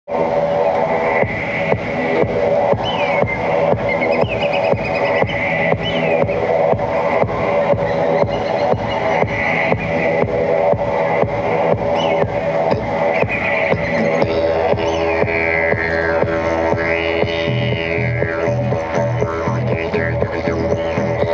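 Background music with a steady, fast beat; a low sustained drone comes in about two-thirds of the way through.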